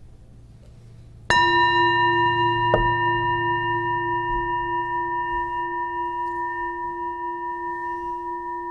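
A singing bell struck once, about a second in, then ringing on with several steady overtones that fade slowly. A light second knock comes about a second and a half after the strike. The bell is rung to open a moment of silent reflection.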